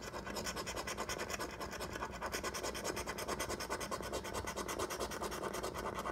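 A coin scraping the coating off a scratch-off lottery ticket in quick, even back-and-forth strokes.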